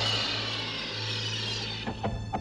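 Sci-fi film sound effect: a broad hiss that swells and then fades away over a steady low hum, with a sharp click near the end.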